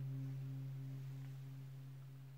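The last low note of an acoustic guitar ringing out at the end of the song, a steady low tone that slowly fades, wavering slightly about three times a second.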